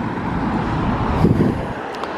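Cars passing close by on the road, a steady tyre-and-engine noise that swells a little past a second in as a car comes past.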